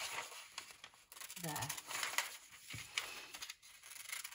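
Sheets of tracing paper and drawing paper rustling and crinkling as they are handled and shifted on a tabletop.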